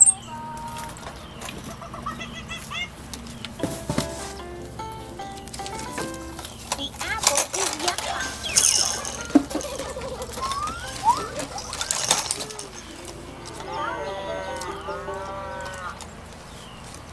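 Short squeaky chirps and whistled calls scattered over rattling and clicking from plastic baby toys being handled, with a run of repeated arching squeals near the end.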